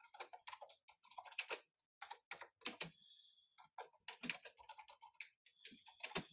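Typing on a computer keyboard: quick, irregular runs of key clicks with short pauses between them.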